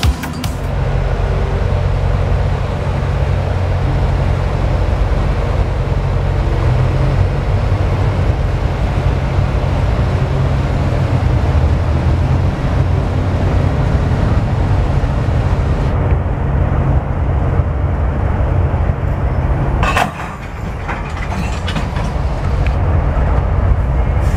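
Diesel-hauled freight train passing close by: a steady, loud low rumble of locomotive engines, with the rolling noise of the cars on the rails. About twenty seconds in the sound suddenly drops, then builds again.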